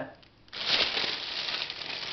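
Plastic food packaging crinkling and rustling as it is handled, starting suddenly about half a second in and going on as a dense, uneven crackle.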